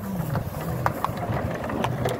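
A vehicle engine running slowly at low revs, with a few sharp clicks over it.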